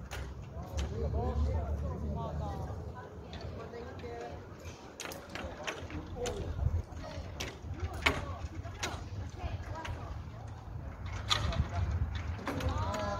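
Faint, indistinct chatter of several people's voices over a steady low rumble, with scattered sharp clicks.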